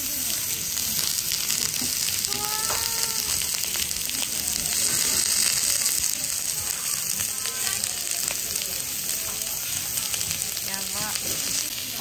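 Slices of Suffolk lamb sizzling on a hot, ridged jingisukan dome grill pan: a steady frying hiss as the meat sears.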